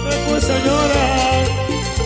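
Live Latin dance band music: steady bass and a regular percussion beat, with a sung melody over it.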